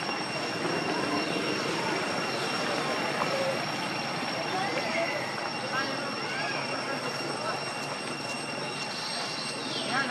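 Outdoor ambience: a steady noisy background with a thin, continuous high-pitched whine. A few short chirping calls rise and fall about five to six seconds in and again near the end.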